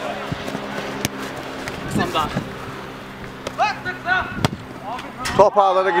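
Sharp thuds of a football being kicked on an artificial-turf pitch, a few seconds apart, with short shouts from players over a steady low electrical hum. The commentator starts speaking near the end.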